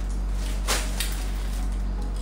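A plastic mailer bag rustling briefly as it is handled, followed by a light click, over a steady low hum.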